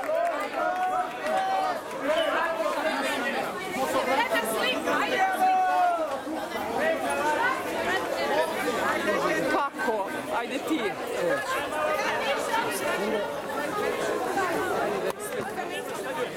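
A crowd of many people talking over one another, with several voices calling out at once.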